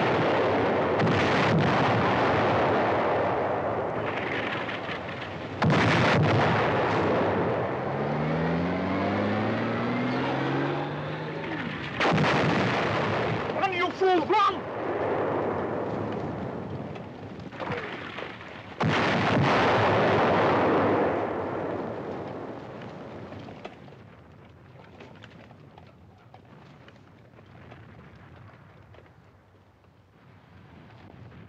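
Artillery shells exploding one after another, each blast sudden and loud with a long rolling rumble as it fades. A rising whine is heard about eight seconds in, and the explosions thin out into a quieter rumble near the end.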